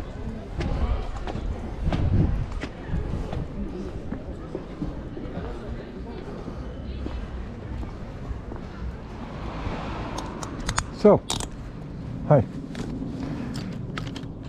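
Outdoor street ambience with distant voices and a low rumble on a moving handheld microphone. Two short, loud pitched sounds stand out near the end.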